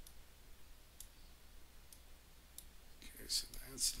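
Computer mouse clicks: four sharp single clicks, roughly a second apart, as menus and fields are clicked in the software.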